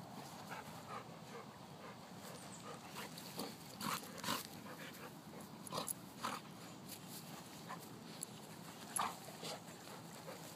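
Two dogs play-wrestling, making short, scattered play noises at irregular intervals, the loudest about four seconds and nine seconds in.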